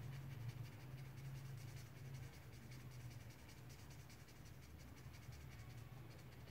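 Black felt-tip marker scratching on paper in many quick short strokes, colouring in a small area, over a low steady hum.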